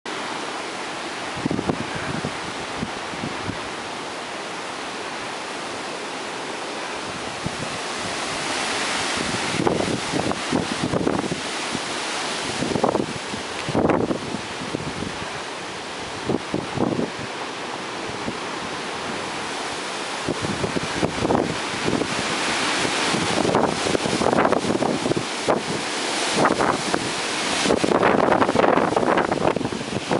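Hurricane winds gusting hard through trees, a continuous roar of wind with rain, in repeated surges that buffet the microphone. The gusts grow stronger over the last few seconds.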